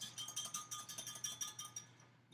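Milk, oil and an egg being beaten together in a bowl by hand, the utensil clicking rapidly against the bowl with a ringing clink, about ten strokes a second, dying away near the end.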